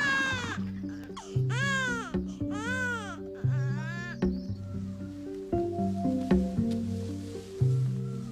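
A newborn baby crying, four rising-and-falling wails in the first four seconds, over a film score of sustained low notes that carries on alone after the crying stops.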